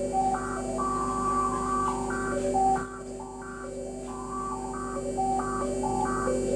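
Modular synthesizer drone music: a quick stepping sequence of short electronic tones over a steady low drone. A brief very high whistle sounds about three seconds in, after which the overall level dips.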